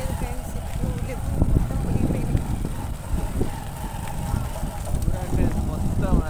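Wind buffeting the microphone: a gusty low rumble.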